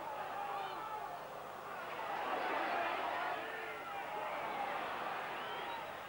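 Football crowd at a stadium: a steady hubbub of many voices that swells a little about two seconds in and eases again toward the end.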